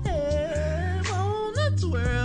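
A song playing back: a sung vocal that slides and wavers in pitch over a steady, held bass line.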